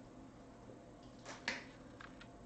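Two short, sharp clicks about a second and a half in, the second louder, over a faint steady room hum.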